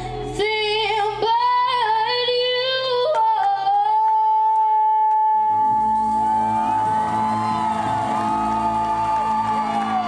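A woman singing live with a band, her voice wavering through a short phrase and then holding one long note from about three seconds in. The band comes in under the held note with a sustained chord about halfway through.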